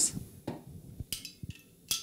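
Plastic lid pulled off a Vitamix blender container, and the container and lid set down on a wooden board: a few light clacks and knocks spread over two seconds.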